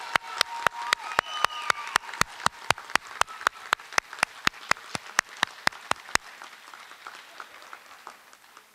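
A man clapping steadily close to a podium microphone, about four claps a second, over quieter audience applause. His claps stop about six seconds in and the applause fades out.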